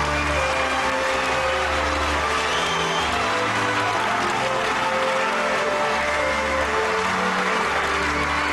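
Audience applauding steadily, with music of held notes playing over the clapping.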